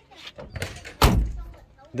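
A car door on a 1969 Camaro shut once, a solid slam about a second in, with a heavy low thud, after some faint rustling.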